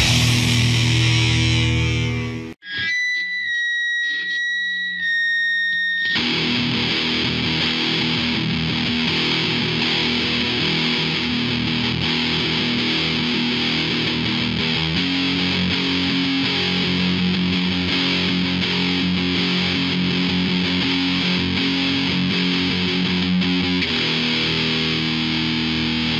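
Hardcore punk band music with heavily distorted electric guitar. About two and a half seconds in the band cuts out and a single held high guitar tone rings alone for about three seconds. Then the full distorted band crashes back in and plays on steadily.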